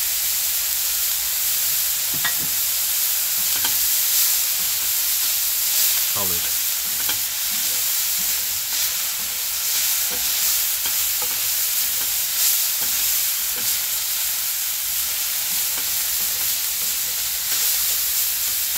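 Ground beef sizzling in a dark steel frying pan, stirred and scraped with a wooden spatula as the spice mix is worked in. A steady frying hiss runs throughout, with irregular short scraping strokes.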